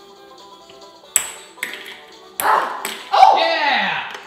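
Ping pong balls bouncing off hard plastic and the counter, two sharp clicks in the first half over faint music. Then loud voices exclaim in the second half, one a long falling 'ohh', as a ball lands in a cup.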